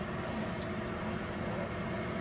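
Steady hum and hiss of kitchen background noise around a stove in use, with no distinct events.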